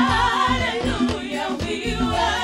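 Gospel worship music: several voices singing with vibrato over a low instrumental accompaniment.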